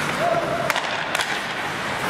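Ice hockey skates scraping and carving on rink ice, with a few sharp stick clacks about halfway through, over the steady hum of the rink.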